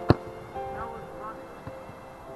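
A football kicked hard with a boot just after the start: one sharp thud, the loudest sound. Held musical notes and voices go on underneath.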